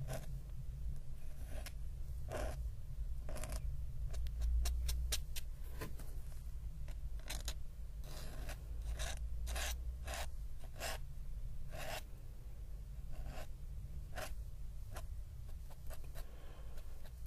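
Metal nib of a dip pen scratching and tapping on sketchbook paper in many short, irregular strokes, thickest a little past the middle. Near the end the nib is pressed hard enough to splay its tines.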